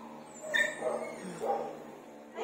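Dogs yipping and barking: about three short, high calls.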